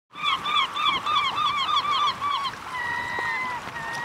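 Bird calls: a quick run of about a dozen short arching calls, roughly five a second, then two long, steady whistled notes.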